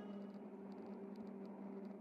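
Near silence in a gap between two songs of background music: only a faint fading tail of the previous song, with a faint steady low tone.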